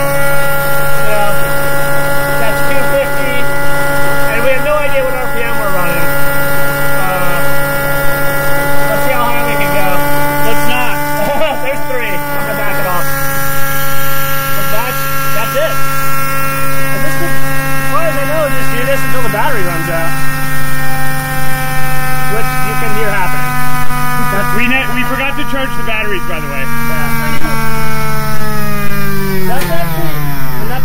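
Electric motor driving the feed-system pump, running at a steady high whine with a stack of even tones. Over the last few seconds its pitch sags, then falls steeply near the end as the motor shuts off and spins down.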